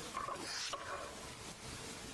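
A brief soft noise close to the lectern microphone in the first second, then quiet church room tone with a faint steady hum.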